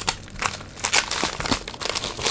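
Thin clear plastic wrapping crinkling in irregular crackles as hands pull it open and unwrap a small package.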